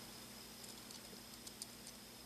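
Near silence with a few faint light ticks, mostly in the second half, from a 1.5 mm hex key working a counter-threaded screw in a stainless steel dive-watch bezel.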